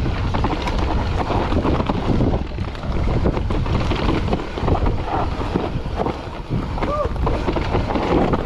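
Mountain bike descending a loose dirt trail: wind buffeting the handlebar camera's microphone over tyres crunching on dirt and the bike rattling and clattering over bumps. A short squeak about seven seconds in.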